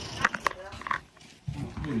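Phone microphone being handled and covered: a few short knocks and rustles, then muffled voices, with a person starting to speak near the end.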